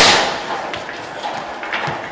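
Boxing gloves punching a heavy bag: one loud hit at the start that rings off, then a run of lighter, quicker punches.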